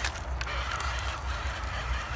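Small electric motor of a toy RC crawler whining steadily as it strains in snow on a nearly flat battery, over a steady low rumble.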